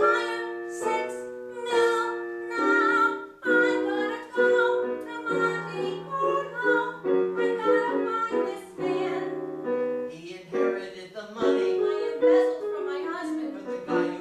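A woman singing a solo musical-theatre number live, accompanied by piano.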